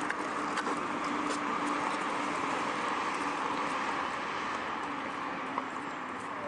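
Steady outdoor traffic noise with the faint, even hum of a small hatchback's engine as the car rolls slowly past.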